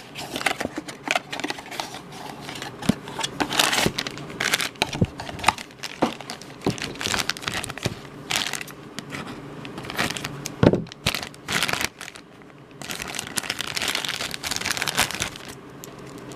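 Cardboard blind box being opened and the figure's black foil bag crinkling and tearing as it is pulled open, in dense irregular crackles with a few sharper snaps about two-thirds of the way through.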